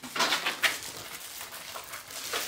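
Clear plastic wrapping crinkling and rustling as a rolled scooter grip tape sheet is unrolled by hand, with a few sharper crackles in the first second and softer rustling after.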